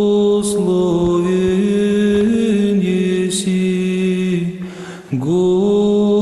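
A church choir chanting in long held chords that move up and down in steps. The singing fades briefly about four and a half seconds in, then comes back in suddenly.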